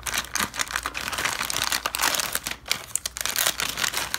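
Clear plastic packaging bag crinkling and rustling as it is handled: an uneven run of crackles.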